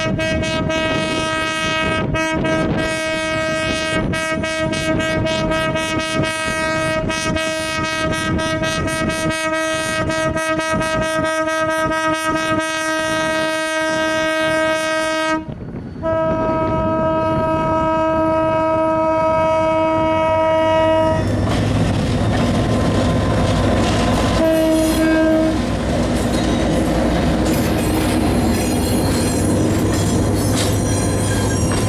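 Air horn of the GT22 diesel lead locomotive: a long blast that breaks off about fifteen seconds in, a second blast of about five seconds, and a short toot a few seconds later. Then diesel engine rumble and the wheels of the passing car-carrier wagons clattering over the rail joints.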